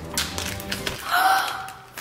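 Plastic zip-lock bag crinkling and crackling as it is pulled open along its cut edge, a quick run of crackles in the first second. A brief voice, like a gasp, follows about a second in.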